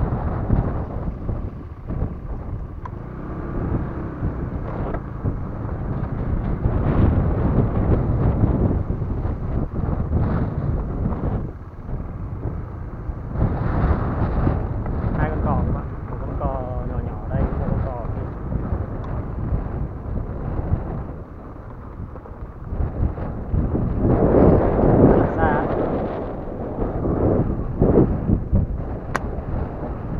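Wind buffeting the camera microphone, a loud low rumble that rises and falls in gusts. A single sharp click comes near the end.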